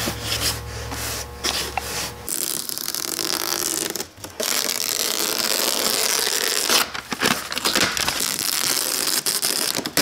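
Handling noise of wood: creaks and rubbing as the piano case and its hinged lid are worked. A steady low hum stops abruptly about two seconds in, and the sound breaks off sharply several times.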